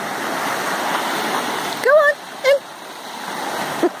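Small sea waves breaking and washing up a shingle beach. The surf swells over the first two seconds, then drops away as the wave runs back. Two short voice calls come about two seconds in, and a laugh comes at the end.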